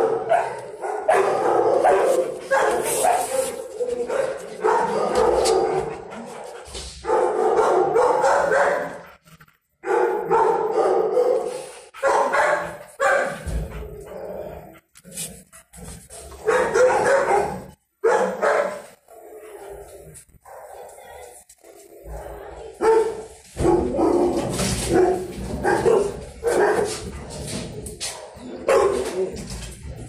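Dogs barking in a shelter kennel, in repeated bursts with short pauses between them.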